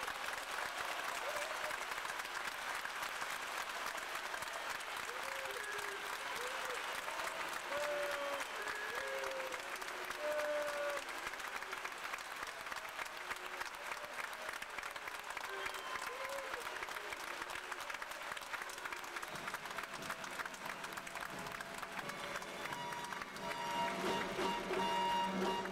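A theatre audience applauding steadily, with a few short calls over the clapping.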